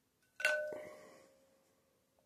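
A plasma arc lighter dropped into a glass bowl of water strikes the glass with a sharp clink about half a second in. The bowl rings with a clear tone that fades over about a second and a half.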